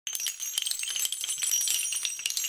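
Dense metallic jingling and clinking, many small sharp ticks over steady high ringing tones: an intro sound effect laid over a logo.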